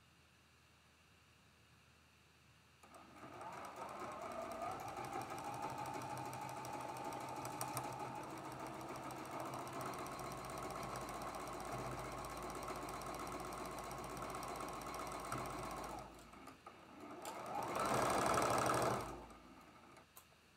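Domestic electric sewing machine stitching a seam through pieced quilt-block fabric. It starts about three seconds in and runs steadily for some thirteen seconds, stops briefly, then runs again louder and faster near the end.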